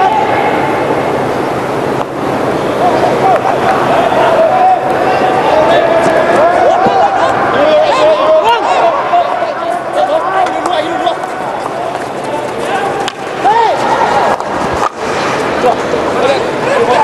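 A steady din of many voices shouting and calling over one another, rising and falling in pitch.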